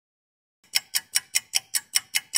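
Clock-ticking sound effect, about five ticks a second, starting about two-thirds of a second in after a short silence: a quiz countdown giving thinking time before the answer.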